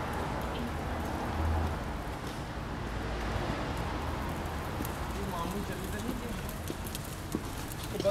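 Steady outdoor city background noise with faint distant voices and scattered light clicks, and a low hum that swells briefly about a second and a half in.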